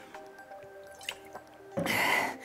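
Soft background music with held notes under small wet gulping sounds as a woman drinks from a water bottle. Near the end comes a short, loud, breathy burst of noise.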